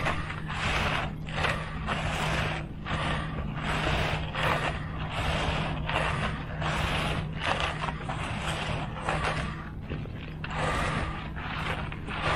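Repeated scraping strokes of a screed board and hand floats drawn back and forth across wet concrete, about one and a half strokes a second, over a steady low hum.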